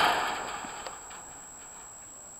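A person exclaims a loud, breathy "oh" close to the microphone, and the rush of breath fades away within about a second. After it only a quiet outdoor background remains, with a few faint ticks.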